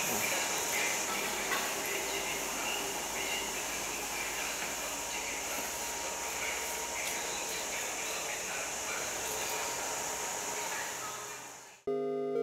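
Steady hiss of background ambience, with only faint, indistinct sounds in it, fading out near the end.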